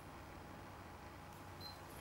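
Quiet room tone with a steady low hum, and a brief faint high-pitched tone about one and a half seconds in.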